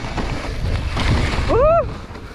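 Wind buffeting the microphone and a mountain bike rattling and rolling over a dirt-and-leaf forest trail at speed, with many small knocks. About one and a half seconds in, a rider gives a short voiced cry that rises and then falls in pitch.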